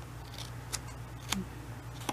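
Small scissors snipping through folded paper, a few short, separate snips while cutting out a divider tab.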